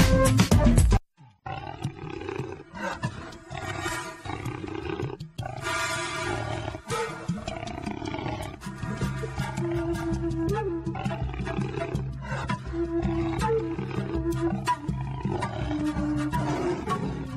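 Loud drum-kit music cuts off abruptly about a second in. After a brief silence, a jaguar roars repeatedly over a music bed, and steady music with held tones takes over in the second half.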